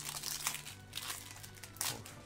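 Foil booster-pack wrappers crinkling and tearing as Pokémon card packs are ripped open in quick succession, with a sharper rip near the end.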